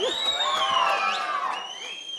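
Audience cheering and whooping, with shrill whistles that glide down and up in pitch, dying away near the end.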